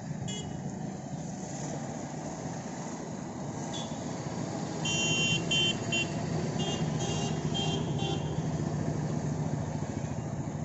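Road traffic passing: a steady rumble of engines and tyres. Vehicle horns give a string of short, high toots from about five to eight seconds in.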